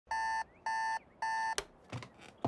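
An electronic alarm beeping three times, each beep about a third of a second long and about half a second apart. Two short clicks follow near the end.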